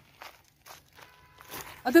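Faint footsteps on dirt ground strewn with dry leaves and twigs. A man starts speaking near the end.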